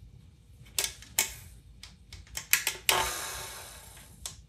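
Small clicks and taps of hands and a tool working on the speed control of a KitchenAid stand mixer's metal motor housing, in an irregular run, then one sharper knock about three seconds in that rings on and fades over about a second.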